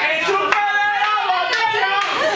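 Party-goers singing together in long held notes, with a few hand claps among them.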